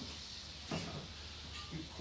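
Plastic storage tote shoved along vinyl gym mats, with a short knock or scrape about two-thirds of a second in and smaller bumps after it.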